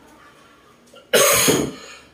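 A person coughing once, a short harsh burst about a second in that fades within half a second.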